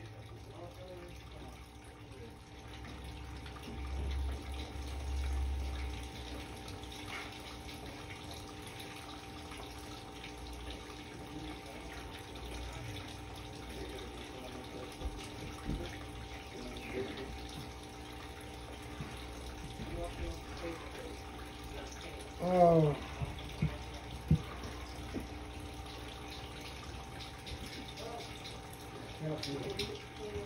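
Water running steadily from a tap into a sink while something is rinsed off under it. A short voice-like sound about three-quarters of the way through is the loudest moment.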